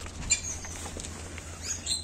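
Puppies eating from a bowl: faint chewing and small clicks of food. A few brief bird chirps sound in the background, one just after the start and more near the end.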